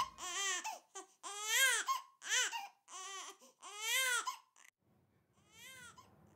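Newborn baby crying in a run of short wails, each rising and falling in pitch. After a brief pause there is one fainter cry near the end.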